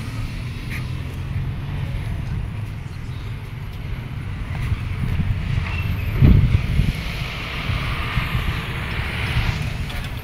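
Outdoor street ambience: wind rumbling on the microphone over distant vehicle traffic, with a heavy thump about six seconds in.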